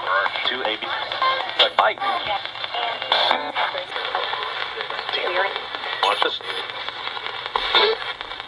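RadioShack pocket radio used as a spirit box, sweeping rapidly through stations. It gives choppy, broken snatches of broadcast voices and music, thin and tinny through its small speaker.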